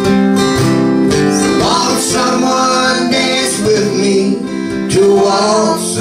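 Strummed acoustic guitar playing a slow waltz, with a higher melody line over it in the middle of the stretch.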